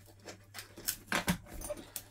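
Metal spring clips on an old fluorescent fixture being flipped open by hand: a few short sharp clicks and clacks of metal on the housing and plastic bowl, the clips opening easily.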